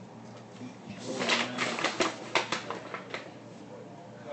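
Distant voices calling out on a baseball field, with a quick run of sharp snaps starting about a second in and lasting about two seconds.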